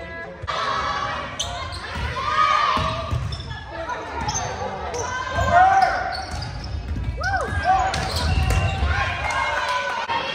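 Indoor volleyball rally: the ball is struck by hands and lands on the hardwood floor in several sharp slaps and thuds, while players shout calls. The sounds echo in the large gym hall.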